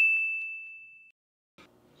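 A single bright, bell-like ding sound effect: one clear high tone that rings out and fades away over about the first second.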